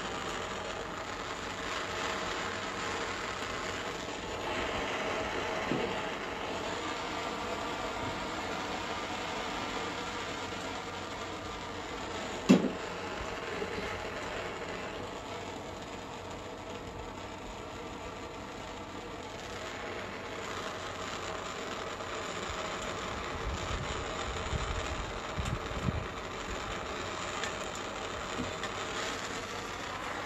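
Handheld propane torch burning steadily, its flame giving a continuous rushing noise as it heats a colander joint for soldering. A single sharp knock about twelve seconds in.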